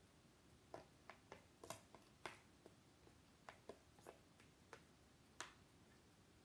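A spoon clicking and tapping against a metal loaf pan as sweet potato filling is scooped out: a dozen or so light, irregular clicks, with the last one a little before the end.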